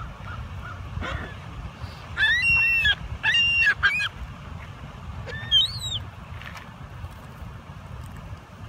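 Ring-billed gulls calling: two loud runs of high, arching calls about two and three and a half seconds in, then a single call near six seconds, with fainter short calls early on. A steady low rumble lies underneath.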